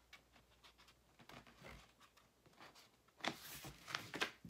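Faint rustling and light ticks of a sheet of infusible ink transfer paper being laid onto a sticky cutting mat, then a louder rubbing swish as it is smoothed down by hand near the end.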